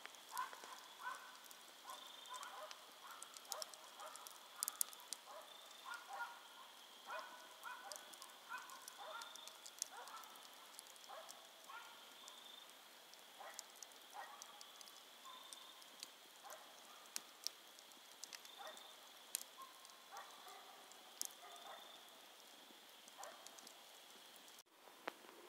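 Wood campfire burning low, crackling faintly with scattered sharp pops. Behind it run a steady high tone and short pitched sounds.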